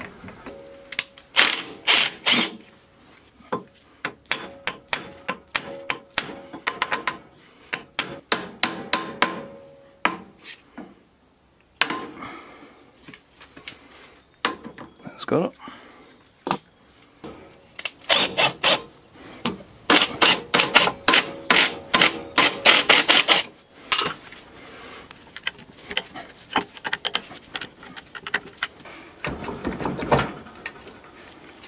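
Worn bevel gears and bearings in a Kubota mini tractor's front-axle hub housing clicking and clunking in quick irregular runs as the hub and steering knuckle are turned by hand. The notchy metal clicks are the sign of a pitted, worn-out bevel gear and sloppy bearings.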